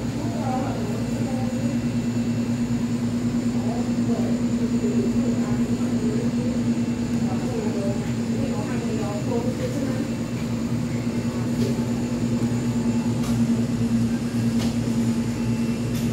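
Steady low machine hum, with faint voices in the background.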